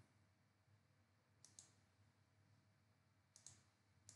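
Near silence with faint computer mouse clicks: two pairs of quick clicks, about two seconds apart.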